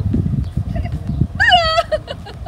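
A woman's laughter, peaking in a short high-pitched squeal about one and a half seconds in, over a steady low rumble of wind on the microphone.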